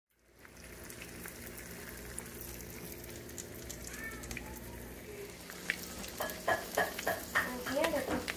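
Eggs frying in a pan: a steady sizzle with fine crackles. Over the last couple of seconds, a run of short, sharp clicks and knocks rises above the sizzle.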